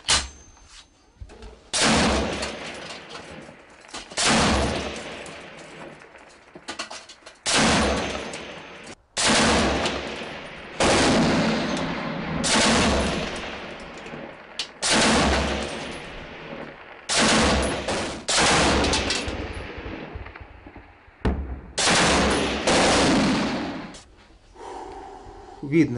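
A belt-fed machine gun firing about a dozen short bursts of automatic fire, one every second or two, each ringing out and dying away over a second or more before the next.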